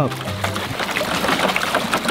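A plastic bucket being dipped into a swimming pool and filled, with water sloshing and gurgling into it, under background music.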